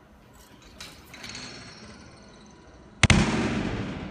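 A gymnast landing a high-bar dismount on a landing mat: one sudden loud thud about three seconds in, with the sound of the mat fading over the following second. A few faint knocks come before it.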